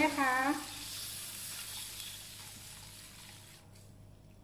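Water being poured into a hot wok of frying spice paste: a steady sizzling, pouring hiss that slowly fades and cuts off suddenly near the end.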